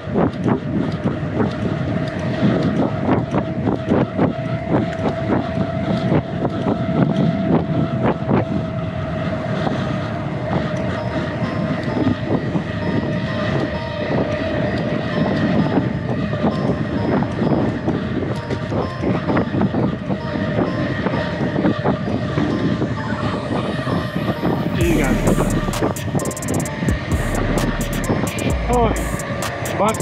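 Loaded touring bicycle rolling fast downhill on rough asphalt: a continuous rapid rattling and clicking from the bike and its handlebar bags, over a steady whine.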